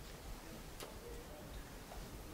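Faint room tone with a couple of soft ticks, about a second apart.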